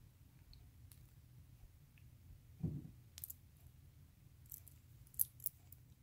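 Faint, sparse clicks of silver charms and stone beads knocking together as a Pandora Essence charm bracelet is turned in the fingers, with a soft low thud about two and a half seconds in.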